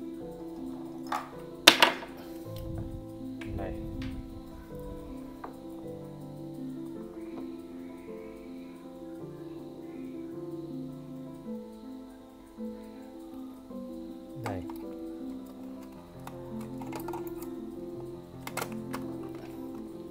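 Music with slow, sustained notes runs throughout. Over it come sharp clicks and knocks as a D-cell battery is fitted into a quartz clock movement's battery holder; the loudest is a snap just under two seconds in.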